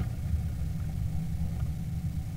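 Steady low machine rumble, like an engine running, with no distinct events over it.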